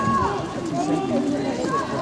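People talking as they walk, their footsteps faintly heard under the voices.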